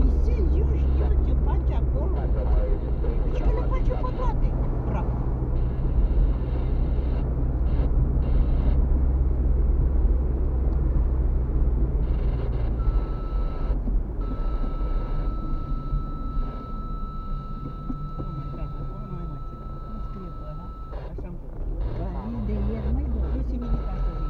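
Car interior noise while driving on a city street: a steady low rumble of engine and tyres on the road, easing about halfway through as the car slows. A thin steady high tone joins it from about halfway through.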